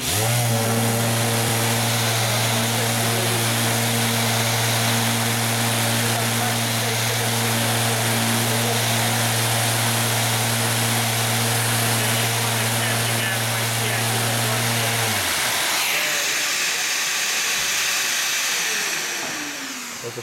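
Electric random orbital sander sanding a wooden board: a steady low hum with a high whir over it. The hum stops about 15 seconds in, leaving the whir, which then winds down with a falling pitch near the end.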